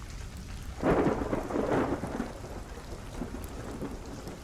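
Rain falling steadily, with a roll of thunder that swells about a second in and fades away over the next second or so.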